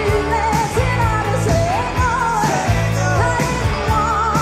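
Rock band playing live: a woman's lead vocal with held, wavering notes over electric guitars, bass and drums.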